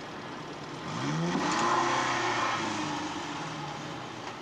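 Car engine revving: about a second in its pitch rises and then holds high, easing down slightly towards the end.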